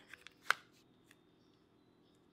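Fingernails picking at the protective plastic film on an iPod touch 4th generation's screen, the film hard to lift: a few small plastic clicks, the sharpest about half a second in.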